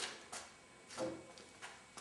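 A handful of light clicks and knocks as a small CO2 inflator and cartridge are picked up and handled.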